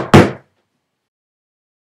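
Quick sharp knocks in a rapid series, the last a moment after the start, each dying away fast.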